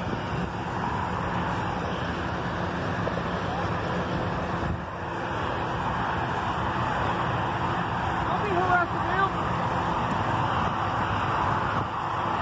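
Steady road traffic noise from cars passing on a nearby road, with some brief faint voice-like sounds about nine seconds in.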